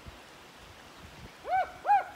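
Short, high hooting calls, each rising and then falling in pitch, coming about half a second apart and starting about one and a half seconds in.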